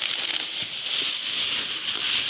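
Thin plastic produce bags rustling and crinkling steadily as hands rummage through them.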